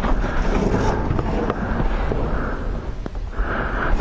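Leather motorcycle jacket rustling and scraping against rough concrete as a person squeezes through a narrow bunker opening, with a few light knocks and a low rumble of wind on the microphone.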